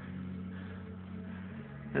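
Steady low mechanical hum of a running motor, made of several low steady tones, with a slight shift in the tones near the end.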